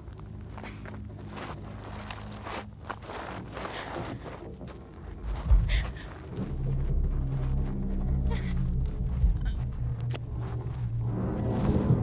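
Low, ominous film-score drone that swells louder about halfway through, with scattered clicks and knocks and one heavier thump shortly before the swell.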